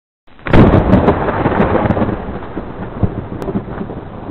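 Thunderclap sound effect: a sudden crack about a third of a second in, then a long rolling rumble with crackles that slowly dies away.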